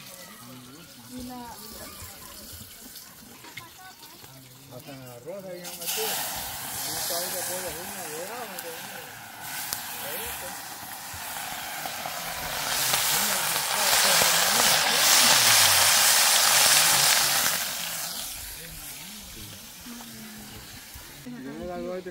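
Hot oil sizzling in a small frying pan over a wood fire: the hiss starts suddenly about six seconds in, grows loudest in the middle and fades out near the end, with faint voices under it.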